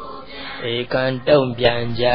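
A Buddhist monk's voice chanting in a slow, sing-song recitation: a few drawn-out syllables that start about half a second in.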